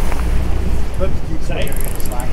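Wind buffeting the microphone over a steady low rumble of the boat and the sea, with a brief burst of rapid high-pitched clicking near the end.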